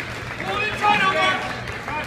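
Spectators and coaches shouting at a wrestling bout, several voices over one another, loudest about a second in.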